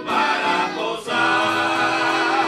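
Small group of men singing a hymn together in harmony, accompanied by strummed acoustic guitars and a piano accordion. The phrase breaks about a second in and a new note is held after it.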